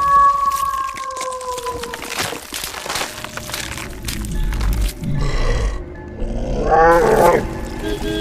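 Horror sound-effect track for a werewolf transformation, over music: a long held tone that fades about two seconds in, a run of sharp cracks, a low rumble, then a loud beast roar about seven seconds in.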